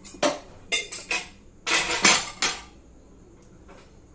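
Metal kitchen dishes and utensils clattering and clinking as they are handled and set down: a few sharp knocks in the first second, then a longer clatter about two seconds in.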